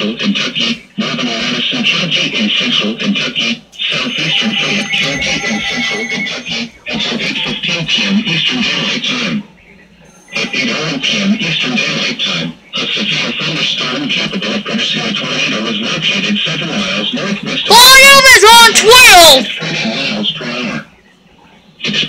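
Television weather broadcast heard through the set's speaker: a presenter's voice talking in runs with short pauses. About eighteen seconds in, a loud, distorted burst of repeated rising-and-falling tone sweeps lasts about a second and a half.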